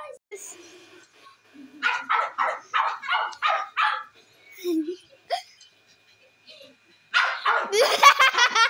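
A dog barking in a quick run of about seven barks over two seconds. Loud laughter starts near the end.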